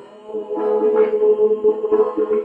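A man holding one long sung note in Persian classical vocal style, starting about half a second in, over plucked string accompaniment.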